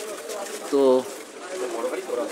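A man's voice saying a single short word, over a low, steady hubbub of a busy street.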